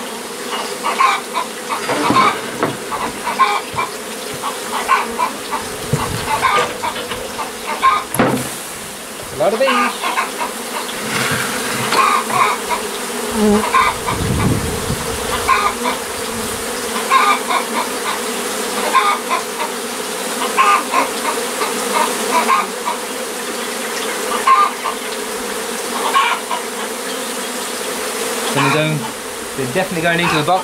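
A large honeybee colony buzzing in a steady drone, the bees disturbed and swarming over their cut-out nest box and comb. A hen clucks in short, frequent calls over it.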